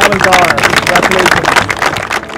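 Excited cheering, with a woman's high voice rising and falling over a dense patter of sharp claps or shouts.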